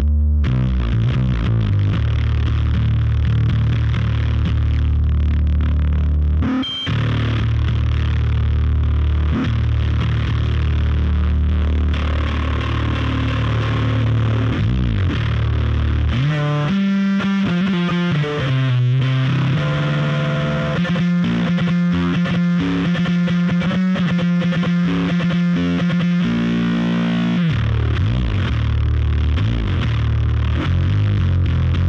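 Electric bass played through a heavy fuzz/distortion effect: a Squier Jazz Bass fitted with a Baguley aluminium neck and an Avedissian Thunderbird-style pickup. Long, held low notes ring for about the first half, with a brief break near seven seconds. A faster riff of quickly picked, changing notes follows, and then the long low notes return near the end.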